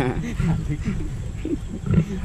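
Indistinct men's voices in short fragments, over a steady low rumble.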